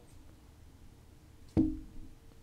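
A single short thump with a brief low ring, about one and a half seconds in, over quiet room tone.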